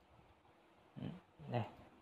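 Faint steady room hiss. About a second in comes a man's short grunt-like hesitation sound, followed by a single spoken word, "đấy".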